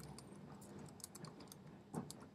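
Computer keyboard keystrokes: several faint key clicks at an uneven pace as an e-mail address is typed.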